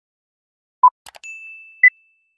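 Quiz countdown timer sound effects: a short electronic beep about a second in, with soft clicks just before it, then a bright ringing ding that holds and fades, and a short higher beep near the end.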